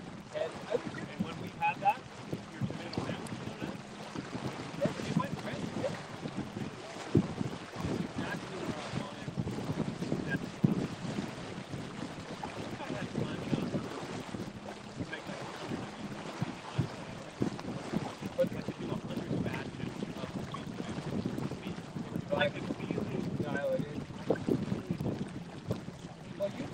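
Wind buffeting the microphone aboard a small sailboat under way, in uneven gusts, with water washing along the hull underneath.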